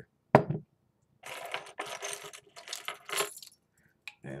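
A single sharp knock, then about two seconds of rustling with a metallic jingle from loose coins being handled, a quarter to be used for prying off a beer bottle cap.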